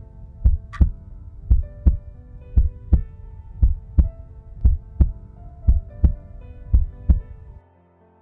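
Heartbeat sound effect: paired lub-dub thumps about once a second over soft, sustained background music. The beats stop shortly before the end, leaving only the music.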